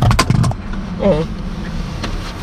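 A burst of crackling clicks and knocks from a faulty microphone in the first half second, a sound-recording glitch. After it comes a steady low rumble of a car's engine and road noise inside the cabin.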